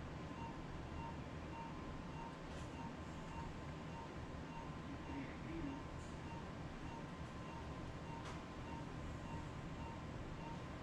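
Operating-room equipment: a steady hum with a short electronic beep repeating evenly about twice a second, and two faint clicks, one near the start and one near the end.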